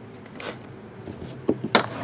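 A shrink-wrapped cardboard box of trading cards being slid across the table and picked up: a brief swish, then a few sharp knocks and crinkles near the end.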